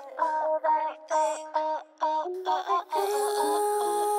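Multitracked a cappella female vocals, all by one singer, with stacked harmony parts. They sing in short clipped bursts separated by brief gaps, then settle into a held layered chord about three seconds in.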